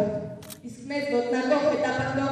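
A young performer reciting Armenian verse into a handheld microphone, heard over the hall's sound system, with long drawn-out vowels and a brief pause about half a second in.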